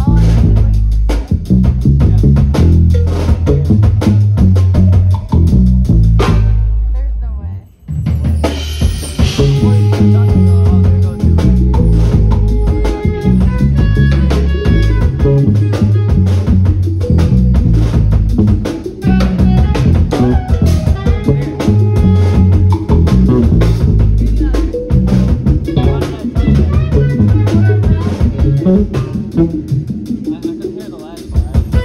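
Live jazz band playing a busy groove: drum kit, electric bass, congas and saxophone. The music drops away briefly about seven seconds in, then comes back with long held melody notes over the drums and bass.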